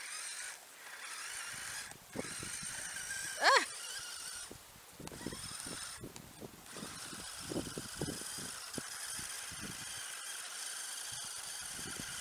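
Battery-powered electric motor of a radio-controlled snowmobile whining as it drives over slushy snow, the whine dropping out briefly a few times as the throttle comes off. A short, loud rising sound about three and a half seconds in.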